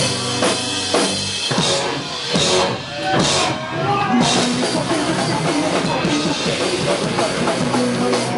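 A punk rock band playing live at full volume, with a driving drum kit loudest and guitars and bass underneath.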